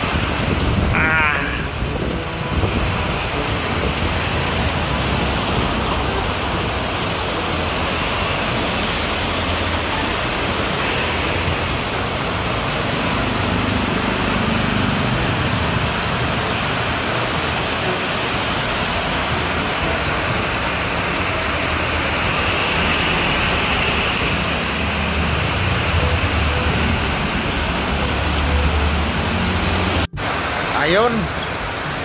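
Heavy rain falling steadily, a dense, even hiss with no let-up.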